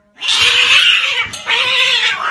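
A cat giving two loud, harsh, raspy calls, each about a second long, the second starting about a second and a half in.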